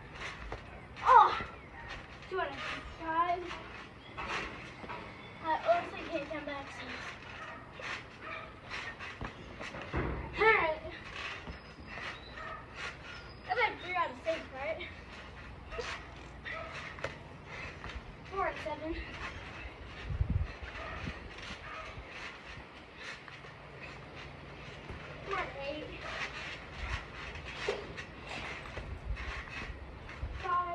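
Indistinct voices over repeated knocks and thumps from a boy bouncing on a trampoline and shooting a basketball at its net-mounted hoop.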